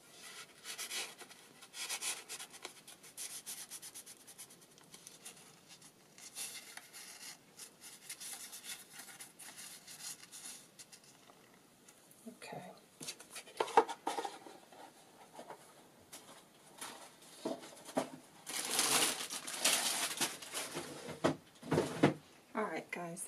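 Paper and cardstock being handled and pressed down by hand: irregular rubbing and rustling of paper, with a few light taps and a louder stretch of rubbing near the end.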